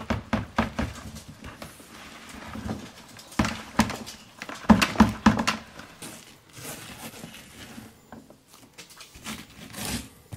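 Chicken manure and bedding tipped from a bucket into the top opening of an IBC container, with irregular knocks and thuds as the bucket and clumps hit the rim. The knocks come thickest in the first half and thin out later, as a gloved hand works around the opening.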